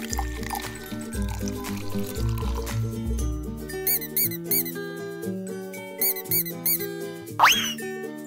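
Cheerful children's background music with a steady beat. Over it, liquid is poured from a plastic cup into a small container in the first few seconds, then a rubber duck squeaks in two quick bursts of short squeaks around the middle. A quick rising whistle sounds near the end.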